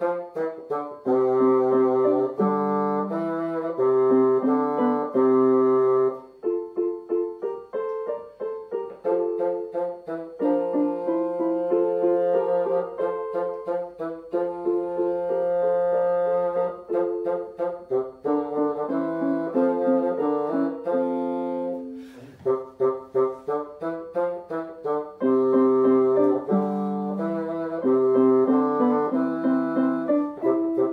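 Bassoon and electronic keyboard playing a simple graded dance piece as a duet. The playing breaks off briefly with a click about three-quarters of the way through, then carries on.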